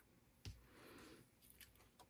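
Faint snip of small scissors trimming baker's twine: one sharp click about half a second in, a soft rustle, then a couple of tiny ticks. The scissors are not cutting the twine cleanly.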